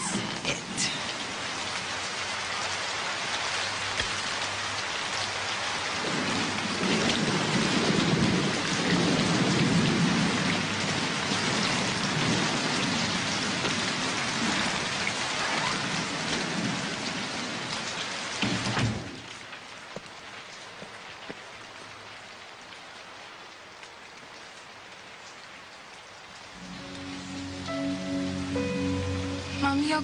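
Heavy rain falling steadily, with a long low rumble of thunder a few seconds in. About two-thirds of the way through it drops abruptly to softer rain, and music with held notes comes in near the end.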